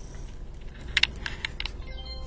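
A few light clicks and taps from equipment being handled, the loudest about a second in, over a low steady room hum.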